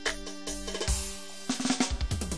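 Tallava dance music driven by a drum kit, with bass drum and snare hits over sustained accompaniment, and a quick run of drum hits near the end.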